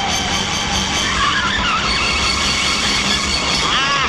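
Film soundtrack of a car chase: a car's engine and road noise, with background music mixed in.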